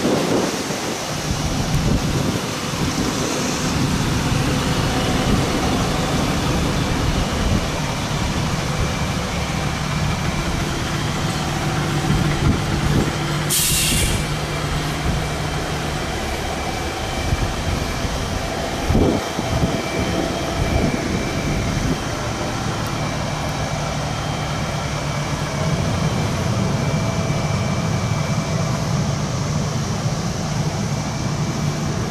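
Fire trucks' diesel engines running as the trucks move slowly along the street, with a short, sharp hiss of air brakes about halfway through and a low thump a few seconds later.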